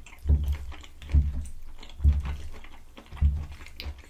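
Close-miked chewing of a mouthful of creamy penne pasta with broccoli: wet mouth clicks and four soft low thumps, about one a second.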